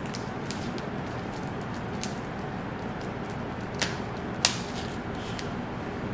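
Scattered crinkles and clicks from a plastic-and-foil wrapped umaibo corn puff stick being handled and broken, with two sharper cracks a little after halfway, over a steady hiss.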